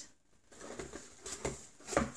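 Plastic wax melt clamshell packs being handled and picked up: light rustling with a few clicks of the plastic, the sharpest just before the end.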